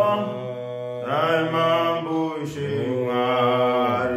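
Two men singing a Shona gospel song together in long held notes, taking short breaths about a second in and again midway through.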